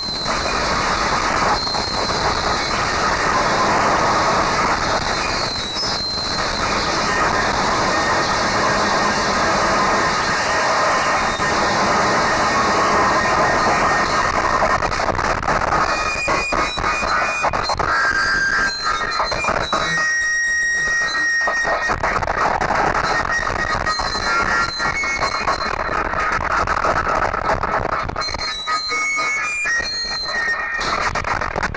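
Harsh noise music: a dense, unbroken wall of noise shot through with shrill squealing tones. About two-thirds of the way through it briefly thins out to a few high whistling tones before the wall of noise returns.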